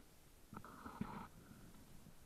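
Leaves and stems rubbing over the camera as it pushes through dense undergrowth: a short, faint rustle with a few light clicks about half a second in, lasting under a second.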